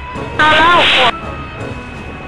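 Cessna 172's engine running at reduced power under a steady rush of air during the landing flare, with a short, loud burst of a voice about half a second in.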